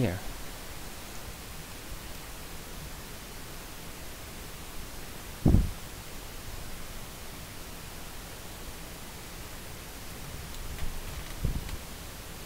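Steady recording hiss from the microphone, with one short low thump about five and a half seconds in and a few fainter low bumps near the end.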